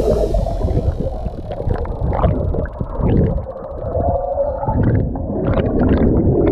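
Underwater sound from a submerged camera: a muffled churning of water and air bubbles stirred up by a swimmer's kicking legs, with scattered brief bubble pops. It dips somewhat quieter around the middle.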